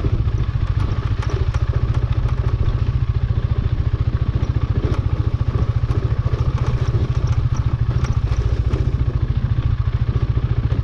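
Motorcycle engine running at low, steady revs with an even pulsing beat, the bike rolling slowly over a rough gravel road. Scattered light ticks and clatter sit over the engine note.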